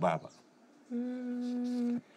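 A woman's closed-mouth hum, a steady "mmm" held for about a second on one unchanging pitch and cut off sharply, after the tail of a spoken line.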